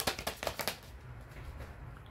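Tarot cards being shuffled by hand: a quick run of card flicks that stops under a second in, then faint low room hum.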